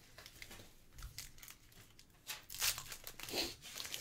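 A trading-card pack's wrapper crinkling and tearing as it is ripped open by hand, quiet at first, with sharp crackles in the second half.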